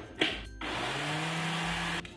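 Countertop blender starting up about half a second in, its motor pitch rising as it gets up to speed, then running steadily as it blends a shake with ice cubes and banana. It stops abruptly at the end.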